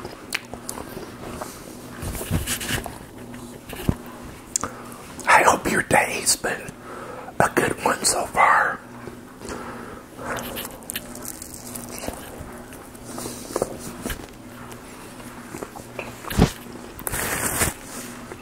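Close-miked eating sounds: biting into and chewing a sausage, egg and cheese bagel sandwich, with wet mouth clicks and smacks coming in irregular bursts. The loudest bursts fall in the middle and again near the end.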